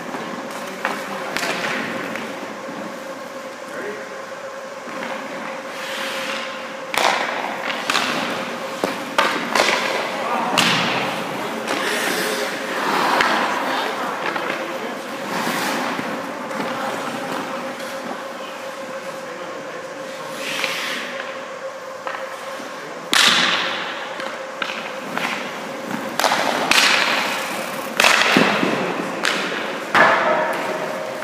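Ice hockey practice on a rink: skate blades scraping and hissing on the ice in turns and stops, with sharp knocks of pucks and sticks against the goalie's pads and the ice, over a steady hum.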